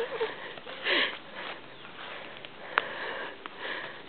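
A person's breath sounds: sniffs and breathy puffs, with a short voiced sound about a second in and a sharp click about three seconds in.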